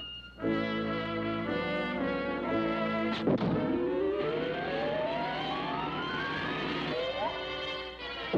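Cartoon orchestral score with brass playing held chords. About three seconds in comes a sharp hit, then a long rising glide in pitch over several seconds, with a short upward swoop near the end.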